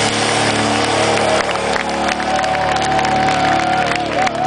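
A live rock band's held chord rings out through a festival PA at the end of a song, over a loud cheering crowd. A steady high tone is held from about halfway through.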